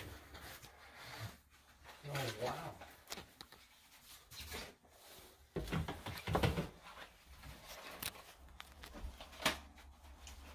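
Faint scattered knocks and rustling from a handheld phone camera being handled and moved around a small room. A louder rumbly stretch comes about halfway through and a sharp click near the end. A voice says "oh, wow" about two seconds in.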